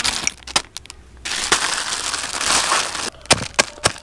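Hard candies inside a plastic bag being crushed with a stone pestle on a stone grinding slab. Noisy crinkling and grinding from about a second in, then a few sharp strikes near the end.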